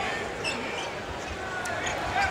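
Basketball being dribbled on a hardwood court, a few dull bounces under the steady murmur of an arena crowd.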